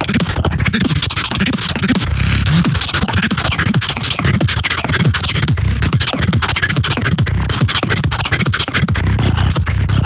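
Human beatboxing into a handheld microphone: a fast, dense run of mouth-made kicks, snares and clicks over a steady low bass tone.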